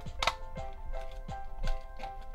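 Background music with a steady tune, over a few sharp clicks and knocks of hard plastic as a cow-shaped toothpaste dispenser is turned over in the hands; the loudest click comes about a quarter second in.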